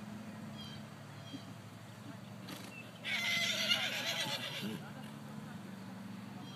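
A horse whinnying once, about halfway through, a loud wavering call lasting under two seconds.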